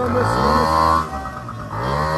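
People's voices in long, drawn-out calls: one over the first second and another starting near the end, with a low steady hum underneath.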